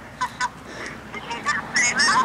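A young woman laughing in short, high, breathy bursts: two quick ones near the start, then a few more, the loudest near the end.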